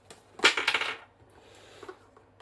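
Loose copper-jacketed PPU Partizan rifle bullets clinking against each other in a plastic bag, a brief jingling rush about half a second in.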